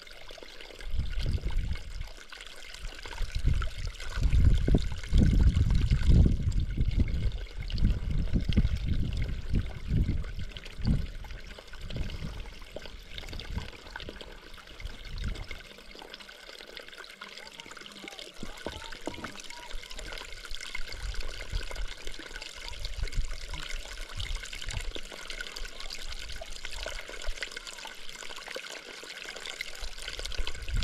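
A small mountain trickle of water running over rocks, a steady splashing hiss. Low rumbling gusts come and go beneath it, strongest in the first ten seconds or so.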